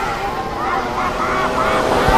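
Several small 50cc youth motocross bike engines buzzing, their pitch repeatedly rising and falling as the throttles open and close.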